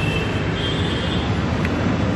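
Steady street traffic noise: a continuous low rumble of vehicles, with no single event standing out.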